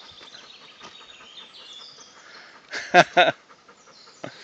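Dog panting faintly while sitting in a mud puddle to cool off in the heat, with two short, loud vocal sounds close together about three seconds in.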